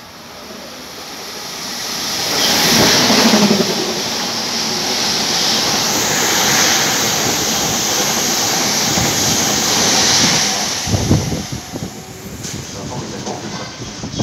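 Double-deck electric train passing through the station at speed. The rush of wheels and air builds over about two seconds and stays loud for several seconds as the cars go by. It then eases, with a few sharp knocks near the end.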